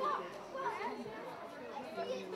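Indistinct chatter of several distant voices talking over one another, with no words standing out.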